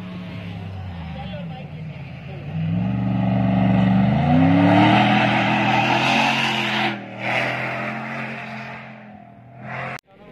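Rally pickup truck's engine revving up hard as it accelerates along a sandy track, its pitch climbing for a couple of seconds and then holding high as it passes close by, with the tyres churning sand. The sound breaks off briefly about seven seconds in and cuts off abruptly at the end.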